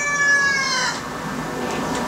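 The end of a rooster's crow: a long held call that falls away and stops about a second in, followed by low background noise.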